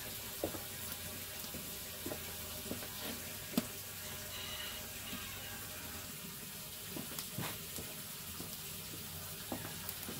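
Quiet outdoor background: a steady faint hiss, with a few light clicks and knocks scattered through and a brief faint high whistle about four seconds in.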